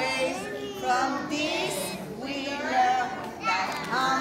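Young children singing a song together, in short phrases of held, wavering notes.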